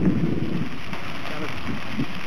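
Steady rushing noise of riding a bicycle on a gravel trail: wind on the camera's microphone and tyres rolling on gravel, with a low rumbling buffet about the first half second.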